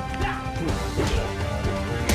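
Fight-scene soundtrack: music with several sharp hit and crash effects from a hand-to-hand brawl, one about a second in and another near the end.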